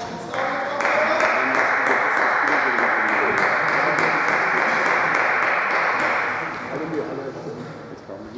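A loud, steady rushing noise that starts with a short rising whine just after the start and fades out near the end, over a murmur of voices in a sports hall. Light clicks of table-tennis balls sound through it.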